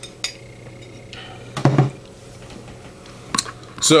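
Sharp clinks of a glass drink bottle being handled as a man drinks from it and then sets it down, with a short voiced breath or sigh about a second and a half in.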